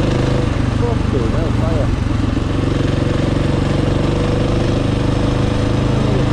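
KTM 450 EXC dirt bike's single-cylinder four-stroke engine running steadily while cruising, with road and wind noise. The engine note holds an even pitch, wavering briefly in the first couple of seconds.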